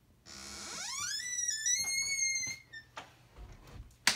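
A high squeal that slides quickly up in pitch, holds a high note for about a second, and stops about two and a half seconds in; a sharp click follows near the end.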